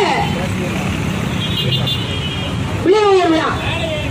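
Steady street traffic noise with a brief, faint vehicle horn near the middle. About three seconds in, a woman's raised voice on the microphone rings out with falling pitch.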